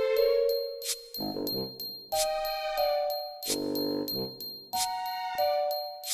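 Background music: a melody of separate struck notes, each ringing on after it is hit, with lower notes between them.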